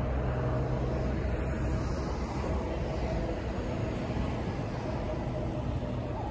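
Steady low rumble of outdoor city ambience, like distant traffic, with a faint steady hum running through it.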